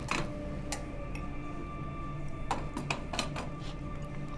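A low, steady drone from the film's score or room tone, with a few light, irregularly spaced clicks and clinks, most of them bunched together about two and a half to three and a half seconds in.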